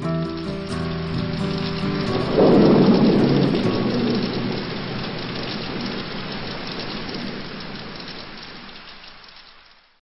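The last acoustic guitar chord rings out, then a clap of thunder rumbles in about two and a half seconds in over a steady hiss of rain. The storm sound then fades away gradually.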